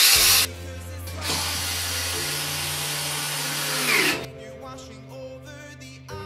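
Small cordless electric screwdriver running in a short burst, then again for about three seconds before stopping about four seconds in, driving screws while assembling a metal-framed night table. Background music plays underneath.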